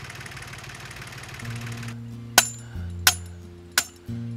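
A steady low rumble and hiss that cuts off about halfway through, then soft background music with long held notes; over the music, three sharp metallic taps roughly two-thirds of a second apart, a hammer knocking a metal pipe fitted to an orchard post.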